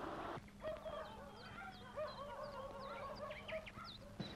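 Several birds calling in a forest, starting about half a second in: many short rising and falling chirps and whistles over a repeated lower warbling call.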